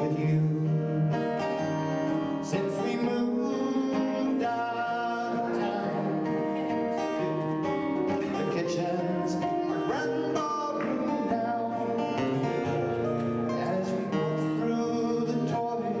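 Several acoustic guitars playing a live country waltz together.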